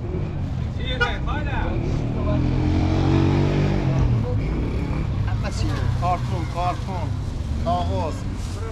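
A motor vehicle's engine passing close by on the street, building to its loudest about three seconds in and fading away a second or so later, with street noise and a few brief voices.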